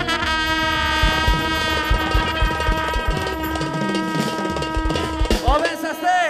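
Brass band music: a brass instrument holds one long steady note over an even drum beat, followed by a few quick rising-and-falling swoops near the end.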